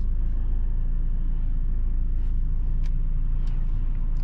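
Steady low rumble of a 2022 Mercedes-Benz GLE 350 4Matic SUV on the move, heard from inside the cabin, with a few faint ticks in the second half.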